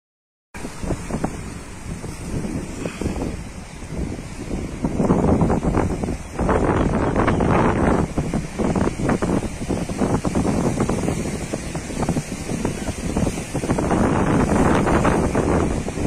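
Strong wind buffeting the microphone in uneven gusts, over the wash of choppy sea waves.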